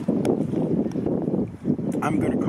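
Wind buffeting the microphone, an uneven rumbling noise, with a couple of short faint clicks.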